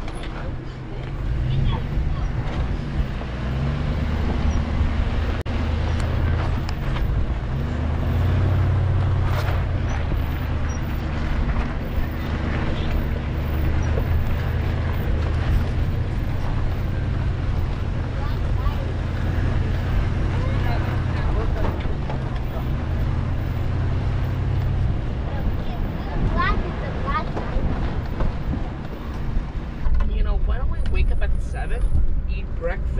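A 4x4's engine running at low speed as it crawls over a rough dirt trail, its note shifting a few times with the throttle, over steady noise from the tyres and ground. A few short high squeaks come near the end.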